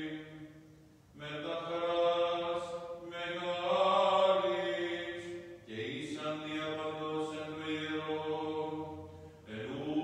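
A man's voice chanting an Orthodox liturgical text unaccompanied, in long held notes, with brief breaks about a second in, just before six seconds, and near the end.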